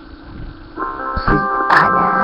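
Song intro: after a quiet low hum, the band's music comes in just under a second in. Steady sustained chords ring over moving bass notes, with a sharp percussive hit near the end.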